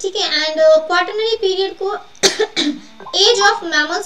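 A woman talking, with one loud cough about halfway through.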